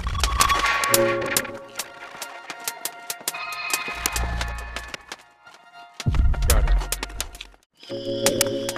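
Experimental electronic patch played back from Ableton Live: drum-rack samples triggered at random in stuttering bursts of clicks and short pitched blips, run through a delay that breaks them up granularly. Low bass thuds come in about four seconds in and again about six seconds in.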